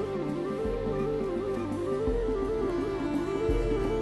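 Soundtrack music: a slow stepping melody over low bass notes that change about every one and a half seconds.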